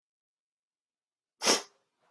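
A man's single sneeze, short and loud, about one and a half seconds in.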